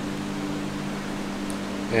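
Steady low hum of room tone with a faint tick about one and a half seconds in; a voice begins right at the end.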